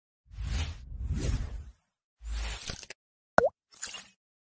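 Sound effects for an animated logo intro: two swells of rushing noise with a deep rumble, then a sharp pitched pop whose pitch dips and springs back up about three and a half seconds in, and a brief high swish at the end.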